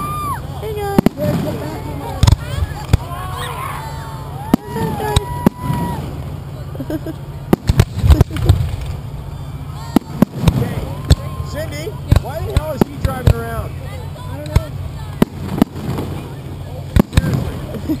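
Fireworks display heard at close range: aerial shells launching and bursting in a rapid, irregular series of sharp bangs, the loudest cluster about eight seconds in.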